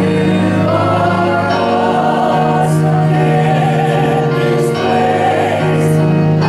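Small mixed vocal group singing a gospel hymn in harmony through microphones, over sustained electric keyboard chords.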